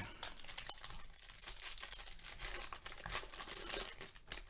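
Foil wrapper of a Bowman Draft Jumbo baseball card pack crinkling and tearing as it is opened by hand, an irregular quiet crackle.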